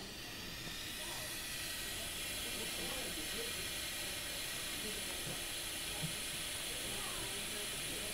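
Steady hiss of air flowing through a newborn's nasal CPAP tubing and prongs, getting a little louder over the first second or so.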